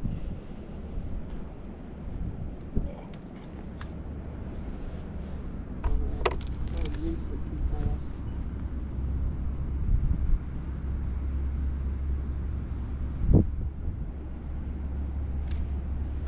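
Wind rumbling on the microphone, with a few light clicks from handling the rod and reel and a single knock late on.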